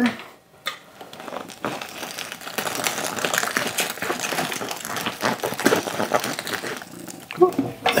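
Sausage meat being forced through a stuffer horn into a wet hog casing: a continuous squishing, crackling sound made of many small irregular pops. It starts about a second and a half in and dies away near the end.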